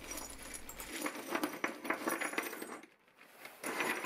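Small laser-cut steel tabs clinking and sliding against each other as they are tipped out of a plastic bag onto a chipboard bench, with the bag rustling. There is a short lull about three seconds in, then more clinking as the tabs are spread out by hand.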